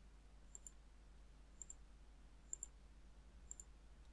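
Faint computer mouse clicks over near-silent room tone: four quick double clicks, about one pair a second.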